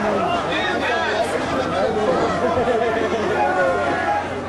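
Wrestling crowd chatter: many voices talking and calling out over one another at once, with no single voice standing out.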